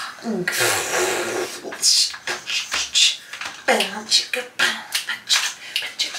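A woman's wordless vocal sounds: a breathy exclamation that falls in pitch near the start, then a run of short breaths, sighs and mouth sounds about every half second.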